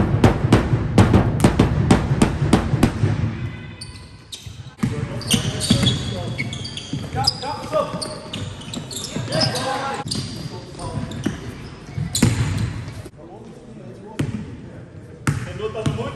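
A basketball bouncing repeatedly on a sports-hall floor, several bounces a second for the first three seconds, then players' voices over game noise with occasional thuds of the ball, and one loud impact about twelve seconds in.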